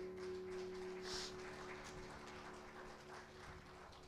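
A worship band's last held chord fading out, with light scattered applause from a small congregation.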